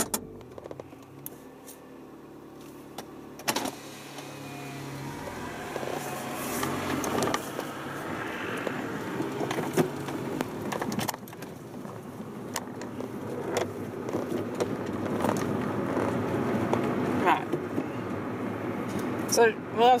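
Cabin sound of a 2000 Toyota Yaris SR's 1.3-litre VVT-i four-cylinder engine and its tyres on the road as the car pulls away and gathers speed, growing steadily louder. The engine sound drops sharply about eleven seconds in, then climbs again.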